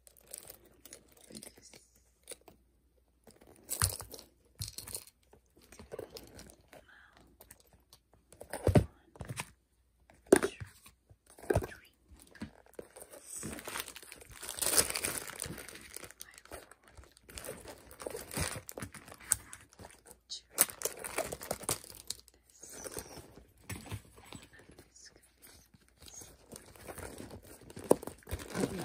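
Hands handling a faux-leather handbag: irregular clicks and taps from its metal clasps and zipper, and plastic wrapper crinkling, densest about halfway through.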